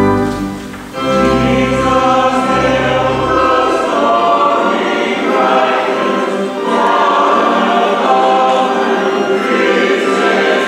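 Mixed church choir of men and women singing. The voices come in about a second in after a brief dip, over low sustained accompaniment notes that drop out after a few seconds.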